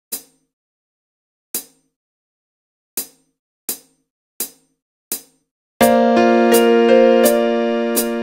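A count-in of six sharp stick-like clicks, two slow then four quick. About six seconds in, Yamaha PSR-175 keyboard chords in an electric-piano voice come in over a light ticking beat.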